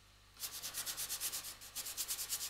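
Paintbrush scrubbing oil paint onto a painting board in quick back-and-forth strokes, about seven a second, starting about half a second in with a brief let-up midway.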